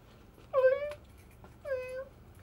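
A man whimpering in two drawn-out, high-pitched cries, each falling in pitch and then held, the first about half a second in and the second near the end.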